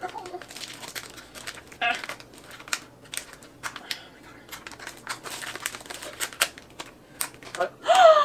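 Thin plastic packaging crinkling and crackling as it is handled, in irregular clusters of sharp crackles.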